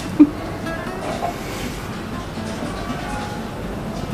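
Quiet background music with faint plucked-string notes. A brief loud sound comes just after the start.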